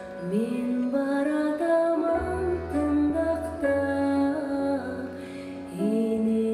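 A woman singing a slow melody in long held notes that slide into pitch, accompanied by a grand piano; a deep bass tone joins about two seconds in.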